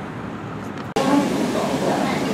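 Restaurant room noise, cut off abruptly about a second in by an edit. After it comes a louder, steady background of indistinct chatter and dining-room clatter.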